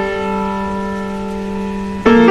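Background piano music: a held chord slowly fading, with no new notes struck.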